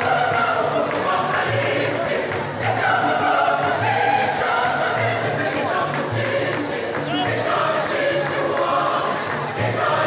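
Large mixed choir of men's and women's voices singing together, with held notes that change every second or so and a steady low part underneath.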